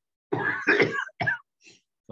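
A person clearing the throat and coughing: one longer rough burst, then two short ones.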